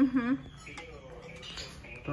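A woman's short voiced sound at the start while she is chewing a mouthful of food, then quiet with a few faint, thin squeaky tones.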